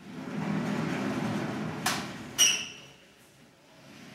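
Vertically sliding chalkboard panels being pushed along their tracks: a rumbling slide lasting about two seconds, then a click and a sharp metallic clank with a brief ring as the panel hits its stop.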